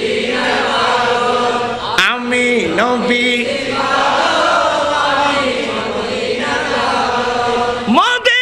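A man chanting in long, held melodic phrases with gliding, ornamented pitch, in the style of Quranic recitation (tilawat).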